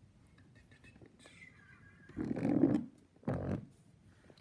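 Mostly quiet room tone with a man's soft voice saying "so" about two seconds in, followed by a second short spoken or breathy sound.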